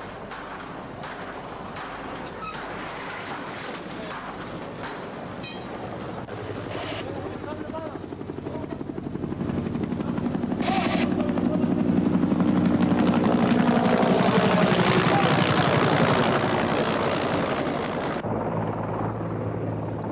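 Helicopter passing overhead, its rotor beat swelling from about a third of the way in to a loud peak, then fading near the end.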